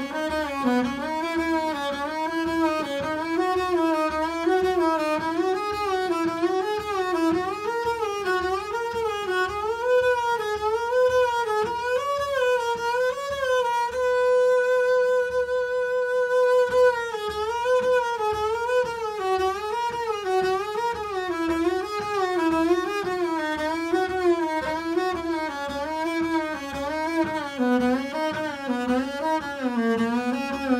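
Double bass played with the bow in quick, continuous three-note whole- and half-step patterns that climb the fingerboard. About halfway through it holds one long high note, then steps back down the same way.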